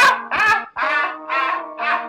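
A hip-hop track with its drums and bass cut out, leaving sustained synth chords. Over it runs a string of short, repeated bursts of loud laughter, about two or three a second.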